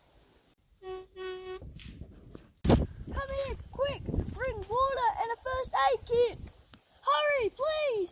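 Two short steady electronic beeps, then a sharp knock, then a person's voice making wordless sing-song sounds whose pitch rises and falls, about three a second, with two longer ones near the end.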